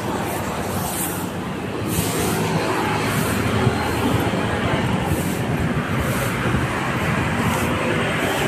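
Steady vehicle noise: a continuous low rumble with no breaks.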